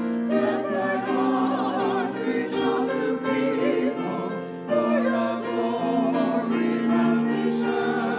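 A small mixed church choir singing an anthem in parts, with long held notes; one phrase ends and the next begins a little before the middle.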